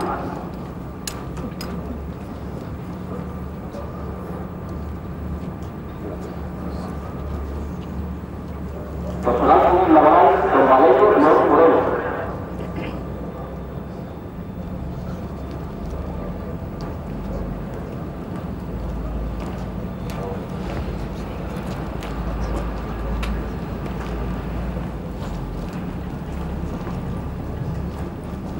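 A steady low outdoor rumble with scattered faint clicks. About nine seconds in, a loud voice calls out for about three seconds.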